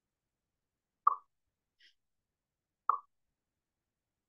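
Two short, sharp plop-like clicks about two seconds apart, of about the same loudness, with a very faint higher tick between them.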